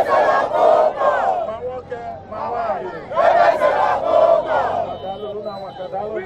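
A crowd shouting together in two loud bursts, one at the start and another about three seconds in, with quieter voices in between.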